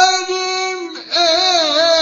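Solo voice singing a Turkish folk song: one long held note that breaks off about a second in, then a wavering, ornamented line.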